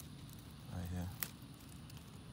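A brief spoken sound, then a single sharp click about a second and a quarter in, over faint low background noise.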